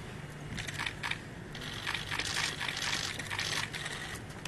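Several short flurries of rapid, high-pitched clicking and crinkling, after a few separate clicks, over a faint low hum.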